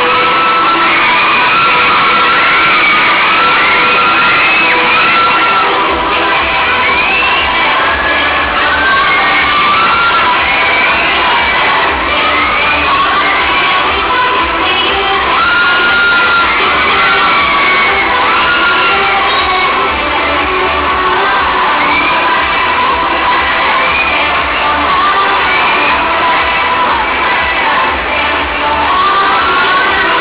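Loud music playing with a crowd cheering and shouting over it; a low bass part comes in about six seconds in.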